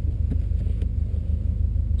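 Subaru Impreza WRX STI's flat-four engine idling, heard from inside the cabin as a steady low pulsing.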